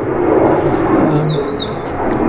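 A songbird sings a quick run of notes stepping down in pitch, lasting nearly two seconds, over the loud steady rumble of a passing aircraft.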